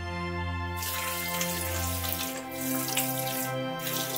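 Aquarium water running and splashing, starting suddenly about a second in, over background music with held notes.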